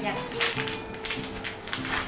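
Sharp clicks and crinkles of a small clear plastic jewellery packet being handled and opened, the loudest about half a second in and again near the end, over light background music with held notes.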